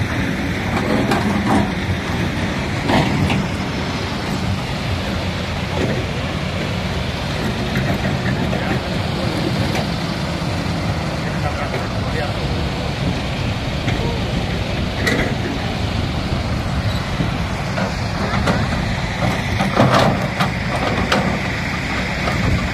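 Heavy diesel quarry machinery running steadily with a low drone, with a few sharp knocks of rock now and then, the loudest near the end.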